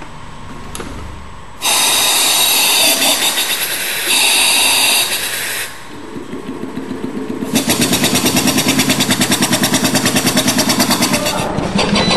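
Compressed-air engine of a small experimental vehicle starting up. There is first a loud rush of hissing air for about four seconds, broken briefly in the middle, then the engine's exhaust puffs begin slowly and quicken into a rapid, steady chuffing.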